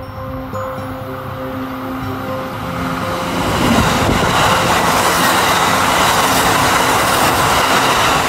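Kintetsu 80000 series 'Hinotori' limited express electric train passing close by. Its running noise builds from about three seconds in and stays loud to the end.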